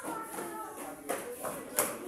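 Two sharp smacks of sparring strikes landing on padded gear, about a second in and near the end, the second louder, over children's chatter.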